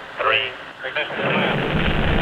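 Saturn IB first stage's eight H-1 rocket engines igniting at the pad: a deep rumble builds about a second in and then holds steady and loud.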